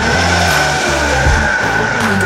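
A countertop blender running with a steady whine, mixed over the bass line of a song.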